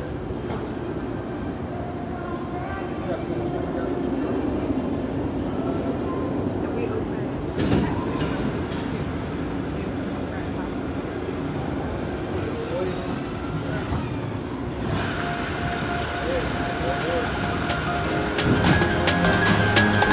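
A B&M hyper coaster train rolling slowly into the station, a steady rumble with one sharp thud about eight seconds in. Near the end a steady whine joins it, followed by a run of rapid clicks.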